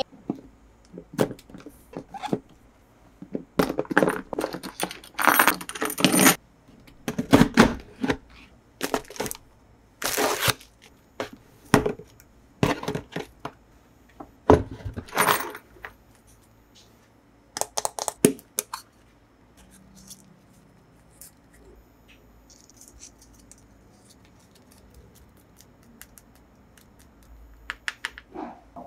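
Metal chains and a padlock rattling and clinking against a hard plastic box as the lock is undone and the chains pulled free, with sharp clicks and clatters in quick runs. The box's plastic lid is then handled, and the last several seconds hold only softer, scattered handling sounds.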